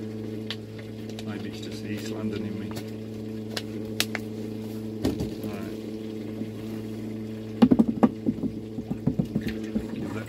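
A steady low machine hum at one fixed pitch, with scattered light clicks and a short louder patch of knocks and handling sounds near the end.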